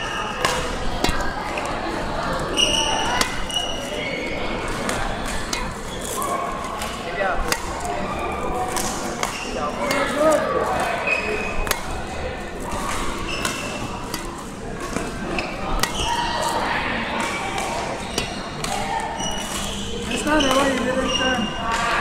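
Badminton racket strings striking shuttlecocks again and again in a multi-shuttle feeding drill, a sharp hit every second or so, with voices in the background.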